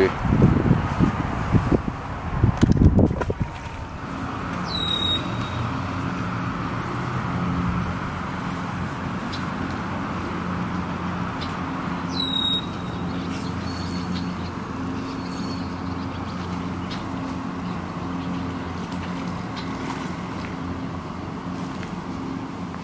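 A steady low motor hum from a distant engine, with two short bird chirps, one about 5 seconds in and one near the middle. Low rumbling bumps fill the first three seconds.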